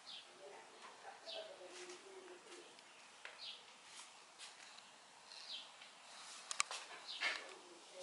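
Faint bird chirps, a short high call every second or two, with a pair of sharp clicks near the end.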